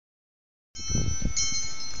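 Several high, bell-like chime tones ring on together, starting a little under a second in, with fresh ones struck about halfway through. There is a low rumble on the microphone under the first of them.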